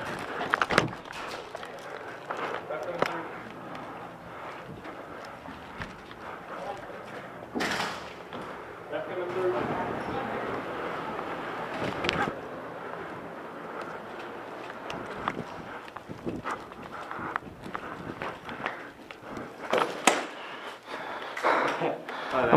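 Player moving through an indoor airsoft arena: footsteps and gear rustle, muffled voices, and a few sharp cracks of airsoft gun fire, with the last cluster near the end.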